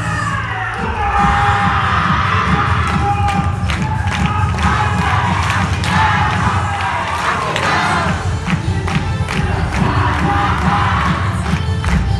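A group of voices shouting and cheering over loud yosakoi dance music with a driving beat; the shouts start about a second in.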